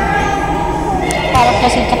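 Excited voices of volleyball players calling out, with short high cries that slide in pitch about one and a half seconds in.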